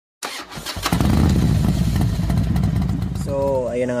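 An engine starts up and runs with a rapid, pulsing low rumble for about two and a half seconds. A man's voice comes in near the end.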